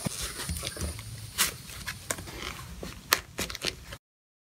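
Leather armrest cover being pulled and peeled off a car seat armrest: uneven rubbing and scuffing of leather, with a sharp click about a second and a half in and a louder one near the three-second mark.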